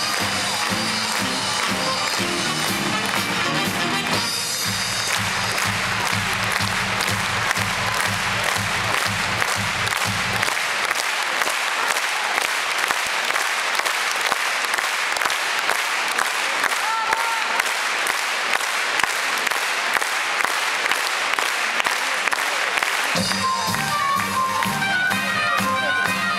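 Audience applauding over band music. The music stops about ten seconds in, leaving the applause on its own, and starts up again near the end.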